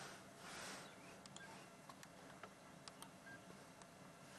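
Near silence: faint outdoor background hiss with a few faint short ticks.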